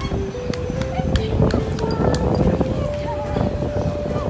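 Background music, a simple melody of held notes, over loud outdoor noise with scattered clicks and knocks.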